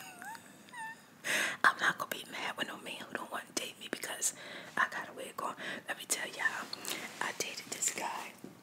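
Close-miked soft whispering and mouth clicks, with a short hummed sound that bends up and down in pitch near the start.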